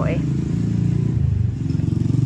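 A small engine running nearby with a steady low rumble, under a woman's single spoken word at the start.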